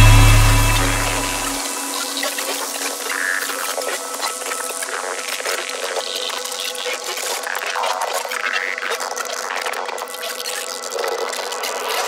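Outro of a dubstep/riddim track: a deep bass note holds and cuts off after about a second and a half. It leaves a thin, hissy, rushing electronic texture with no bass, which carries on to the end.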